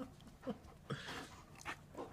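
A dog panting quietly in a few short breaths.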